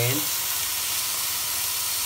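Clams sizzling in a hot, dry stainless-steel pot with no oil, a steady hiss of steam as their own seawater boils off against the hot metal.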